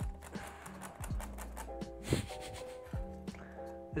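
Soft background music with held chord tones, with several light clicks and taps through it as a metal ashtray is handled.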